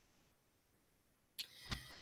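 Near silence, broken near the end by a faint click and a short faint noise.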